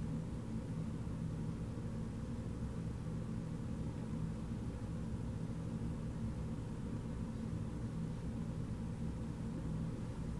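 A steady low hum of background noise, with no distinct events.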